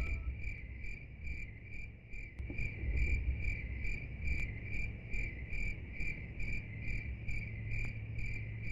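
Cricket chirping in an even rhythm, about two to three chirps a second, over a low background rumble.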